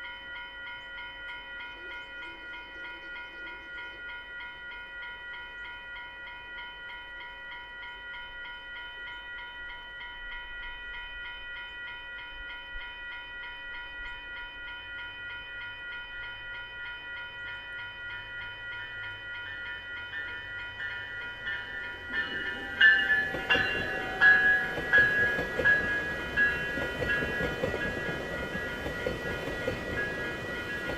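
Electronic level-crossing bell ringing in quick repeated dings as a VIA Rail Siemens Venture passenger train approaches, cab car leading. From about 22 seconds in, the train passes over the crossing with a loud rumble and wheel clatter, sharp knocks standing out over the bell.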